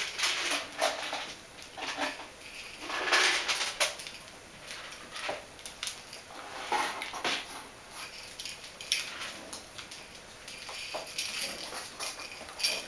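Bichon Frisé puppies play-fighting on a hard floor: irregular scuffles, taps and clatters, with a louder burst about three seconds in.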